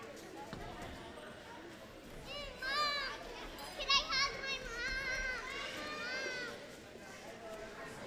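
Young children's high voices chattering and calling out, loudest in the middle few seconds.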